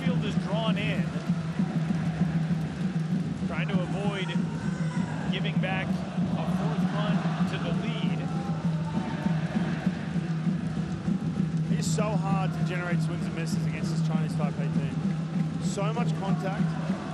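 Baseball stadium crowd noise: a steady din of fans, with voices shouting and chanting over it at times.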